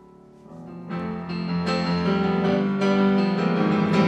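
Roland RD-700GX digital stage piano played in chords, soft at first and then swelling into fuller, louder chords about a second in.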